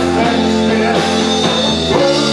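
A live rock band playing, with guitar and drum kit, over a low note held until just before the end.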